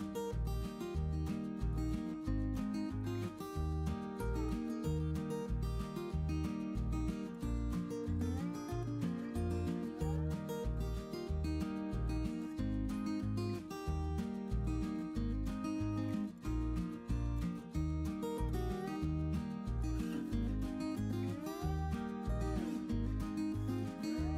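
Background music with a steady, pulsing beat.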